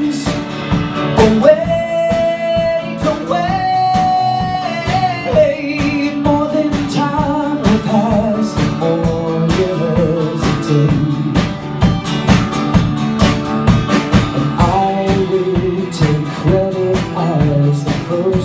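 Live pop ballad: a male voice sings long held notes and vocal runs over acoustic guitar, piano and a drum kit keeping a steady beat.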